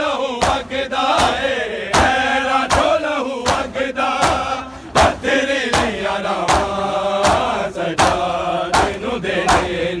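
A group of men chanting a Punjabi noha in unison, with loud rhythmic chest-beating (matam) striking about every three-quarters of a second.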